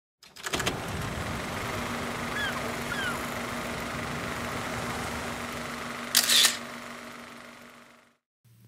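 Camera shutter clicks over a steady hiss with a faint low hum: a few quick clicks about half a second in and a louder shutter release about six seconds in, with two short chirps between them, then fading out.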